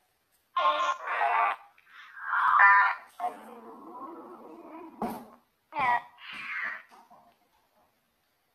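Choppy, warbling voice-like fragments from a necrophonic ghost-box app, coming in several short bursts with gaps between them and a sharp click about five seconds in. The uploader takes them for a spirit voice saying 'mistake her… as a woman'.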